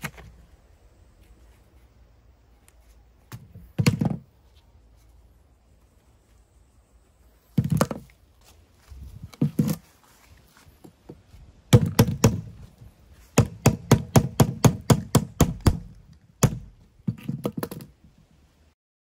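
Hammer blows knocking on wood at a wooden workbench: a few single strikes, then a quick run of about fourteen strikes, several a second, then a few more near the end.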